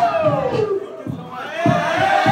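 Crowd cheering and shouting, with one call falling in pitch in the first second. Music with a steady beat comes back in over the second half.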